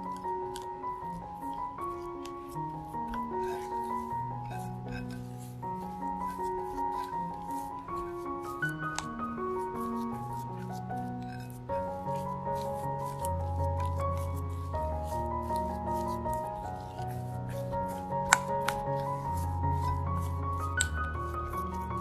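Soft background music with a gentle melody. Under it, a silicone spatula scrapes and squishes mashed potato against a glass bowl, with frequent light clicks on the glass and one sharper click late on.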